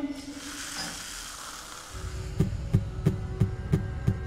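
A soft hiss of liquid being poured into a glass. About two seconds in, a low drone starts with regular low thuds, about three a second, like a pulse: trailer sound design.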